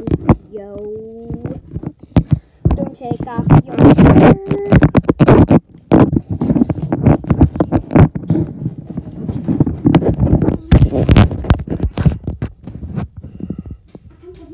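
A long string of knocks, thumps and rubbing from a phone camera being handled, swung about and set down, with a child's wordless vocal sounds among them.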